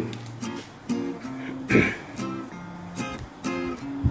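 Background music: an acoustic guitar picking single notes, about two a second.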